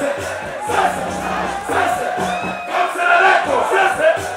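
Loud live concert sound: music through the stage PA with a performer's voice on the microphone, over a large crowd shouting and cheering.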